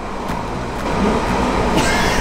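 London Underground Central line train running, heard from inside the carriage as a steady rumble and rushing noise that grows a little louder about a second in.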